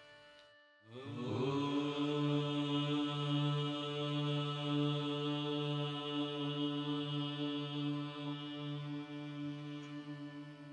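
Devotional music drone: after a brief pause, a single sustained pitch with many overtones swells in about a second in and is held steady.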